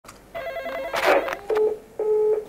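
Intro jingle of electronic tones: a rapidly warbling tone, a short whoosh about a second in, then a steady beep.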